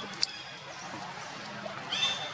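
A single sharp click about a fifth of a second in, over steady outdoor background hiss; a high-pitched call starts right at the end.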